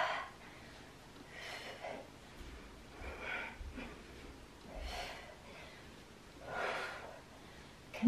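A woman's short, sharp breaths of effort, one with each two-handed kettlebell swing, coming about every 1.7 seconds; the first is the loudest.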